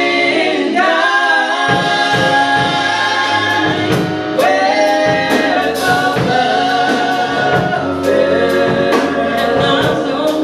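Live gospel worship music: women singing a melody in harmony, backed by keyboard and a Pearl drum kit. The drums and bass drop out briefly near the start, then come back in with a steady beat.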